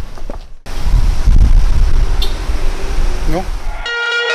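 Loud, uneven low rumble of outdoor noise on the microphone after a cut about half a second in, with a short spoken reply near the end.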